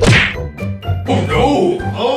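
A single sharp whack as two small metal magnets snap together, with a short falling tone right after it. From about a second in, voices follow.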